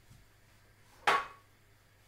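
A single sharp knock about a second in, with a brief ringing tone that dies away quickly, over quiet room tone.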